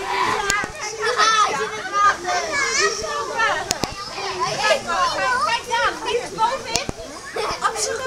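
Many children's voices chattering and calling at once, high-pitched and overlapping without a break, with a few sharp clicks among them.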